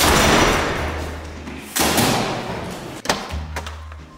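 A heavy entrance door thudding shut at the start, then a second thud just under two seconds later, each trailing off for about a second, with a sharp click near the end. Background music with a low bass line plays underneath.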